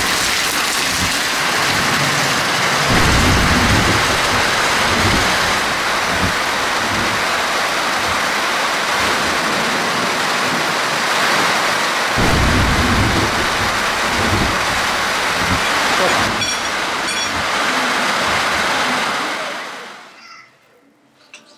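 Heavy rain falling and streaming off a roof edge, a dense steady hiss, with deeper low rumbles at about three seconds and again at about twelve seconds in. It fades out near the end.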